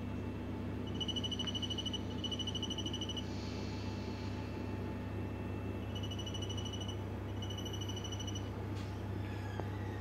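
Electronic beeper sounding in pairs of high, rapidly pulsing beeps, each about a second long with a few seconds between pairs, over a steady low electrical hum. A short hiss comes between the first and second pair.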